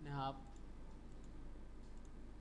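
A couple of faint computer mouse clicks, spaced over a second apart, over a steady low electrical hum.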